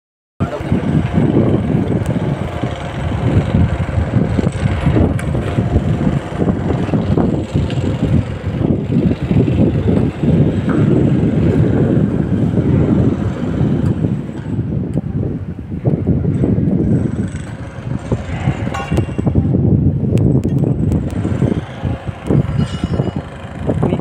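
Indistinct voices over a loud, uneven low rumble of outdoor background noise.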